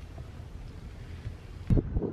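A low rumble, then, near the end, a sudden loud gust of wind buffeting the microphone.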